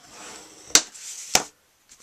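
A layered cardstock greeting card being handled and moved on a wooden tabletop: a soft brushing slide, then two sharp taps a little over half a second apart.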